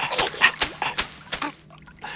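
Leafy birch bath broom slapping on bare skin in a rapid run of strokes that stops near the end, with short whimpering voice sounds among the slaps.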